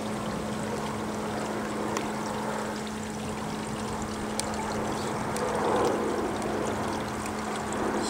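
Steady running-water noise with a low steady hum underneath, from the cooling-water circulation for a distillation condenser.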